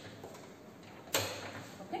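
A single sharp click about a second in, fading quickly: a mains switch being flipped on to power the circuit.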